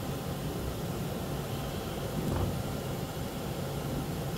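Steady mechanical background hum with an even hiss and no distinct events.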